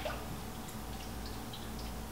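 Faint light splashing and a few small ticks of a spoon stirring sliced ginger in water in a stainless steel skillet, over a low steady hum.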